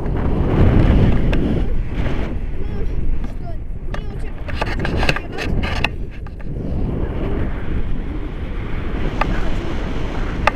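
Airflow buffeting the camera's microphone in flight under a tandem paraglider: a loud, steady rush of wind noise, loudest about a second in, with a few sharp clicks scattered through it.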